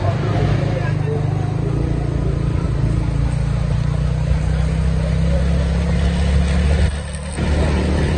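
Steady low rumble of a moving vehicle, heard while travelling along a street, with faint voices mixed in. The rumble dips briefly about seven seconds in.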